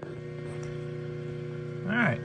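Surface grinder running with a steady electric motor hum of a few fixed low tones, unchanging in pitch and level. A man's voice starts near the end.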